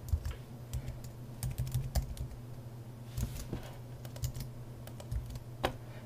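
Typing on a computer keyboard: scattered key clicks at an irregular pace over a steady low hum.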